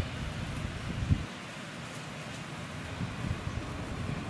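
Wind buffeting the microphone outdoors, a gusty low rumble over a steady hiss, with a brief low thump about a second in.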